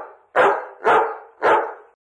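A dog barking: three barks about half a second apart, following one that fades out just as the sound begins.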